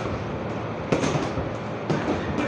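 Gloved punches smacking into heavy punching bags, with two sharp hits about a second apart standing out over a steady busy gym background.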